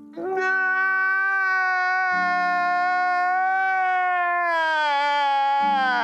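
A man's crying wail: one long, held cry lasting nearly six seconds that sinks a little in pitch near the end, over a low steady musical tone.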